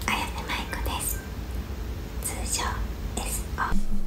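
A woman whispering in short phrases, over a low steady hum that cuts off near the end.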